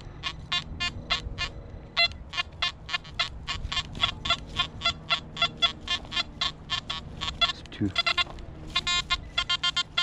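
Nokta Anfibio metal detector sounding a steady string of short beeps, about four a second, as the coil sweeps the ground. Near the end they quicken into a rapid run of beeps as it sounds off on a shallow target lying right on the surface.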